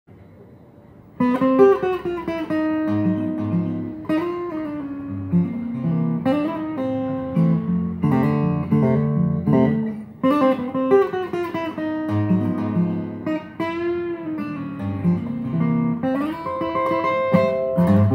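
Cutaway acoustic guitar played fingerstyle, starting about a second in: a melody over sustained chords, in short phrases.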